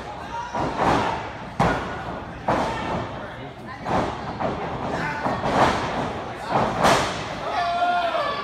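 Repeated thuds and slams from a wrestling ring, bodies and feet hitting the canvas, roughly one impact a second, over shouting voices.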